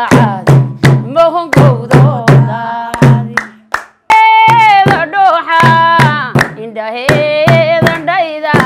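Women singing a Somali baraanbur song over steady hand clapping, about two or three claps a second, with a low drum-like beat underneath. The song fades out just before halfway and comes back in abruptly.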